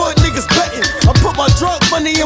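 Hip hop track: a rapper's vocals delivered over a beat with repeated deep bass hits.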